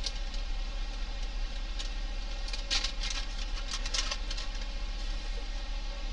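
Soft, brief rustles of a paper laser transfer under the fingers as it is pressed onto a polished steel cylinder and lifted off, a few of them in the middle, over a steady low hum.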